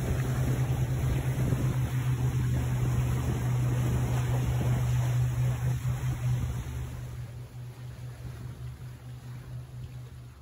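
Outboard engine of a rigid inflatable boat under way, a steady low hum under the rush of water and wind. It grows quieter over the last few seconds.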